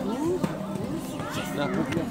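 A person's voice calling out a short "ah!" about a second and a half in, a cue to the horse, over the soft hoofbeats of a horse cantering on wet sand.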